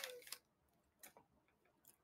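Near silence: room tone, with a few faint, short clicks about a second in and again near the end.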